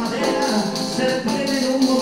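Live acoustic folk music in a quick seguidilla rhythm: strummed strings and moving melodic lines over a steady, fast rattle of hand percussion, about five strokes a second.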